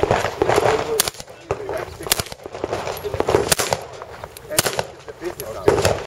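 Semi-automatic pistol fired in a string of single shots, about nine or ten spaced unevenly half a second to a second apart, each report ringing briefly.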